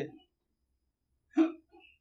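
A man's speaking voice trails off at the start. After a pause, one brief, short vocal sound from him comes about a second and a half in.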